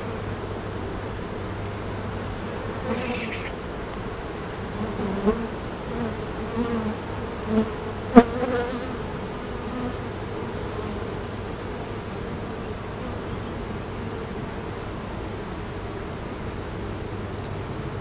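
Honeybee colony humming steadily around a frame of bees held out of an open hive, with single bees buzzing past now and then. One brief, louder buzz comes close about eight seconds in.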